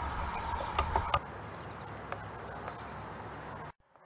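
Outdoor ambience with insects chirring in a steady high-pitched drone, over a low rumble that fades about a second in, with a few faint clicks. The sound cuts off abruptly just before the end.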